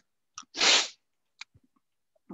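A person's short, sharp burst of breath, about half a second in, with a faint click on either side of it.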